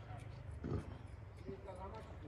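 Faint outdoor ambience: distant voices of people, a couple of brief calls, over a low steady rumble.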